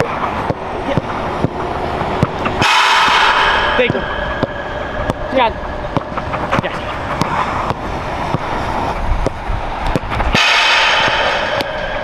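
A football being struck again and again on artificial turf as players pass it between them: sharp thuds of boot on ball, every second or so. A low rumble runs underneath, and twice a louder rushing noise lasts about a second.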